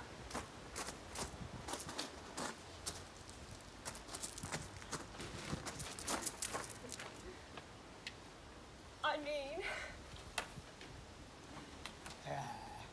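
Scattered footsteps and small knocks on garden steps, then a brief voice about nine seconds in.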